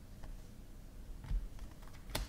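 A stack of glossy football trading cards being flipped through by hand, with a few faint clicks and slides of card against card.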